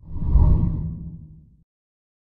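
A deep whoosh transition sound effect that swells in quickly and fades away over about a second and a half.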